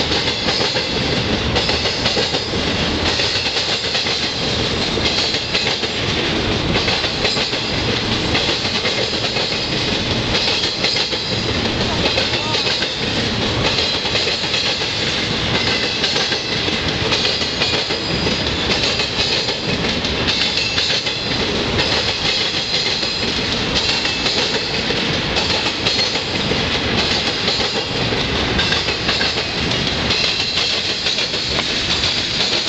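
Wheels of a BNSF piggyback intermodal freight train banging hard over a railroad diamond crossing in a continuous, rapid rhythm as car after car rolls across.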